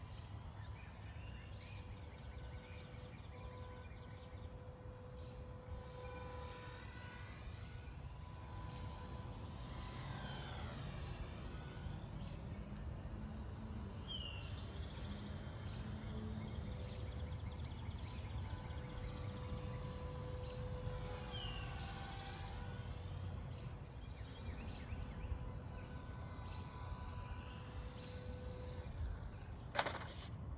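Faint whine of a small foam-board RC plane's ParkZone ultra-micro geared motor and propeller, swelling and fading as the plane flies around, over a low outdoor rumble. Two short bird chirps come about halfway through and again a few seconds later.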